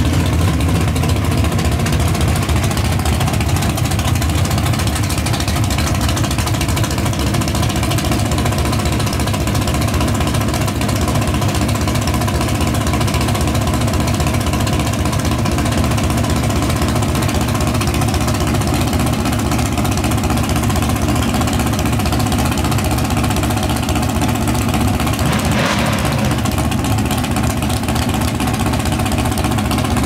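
Pro mod drag car's engine idling loudly and steadily, with a short burst of hiss near the end.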